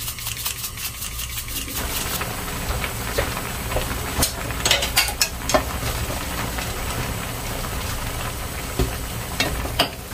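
Instant ramyeon noodles simmering in a frying pan, stirred with wooden chopsticks that click against the pan several times in the middle. At the start, seasoning is shaken into the pan with a quick run of light ticks.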